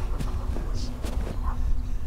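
Footsteps crunching through snow and brushing past branches, a few soft crunches and rustles over a steady low wind rumble on the microphone.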